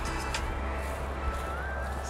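Low, steady rumble of road traffic, with a faint thin whine that rises in pitch in the second half.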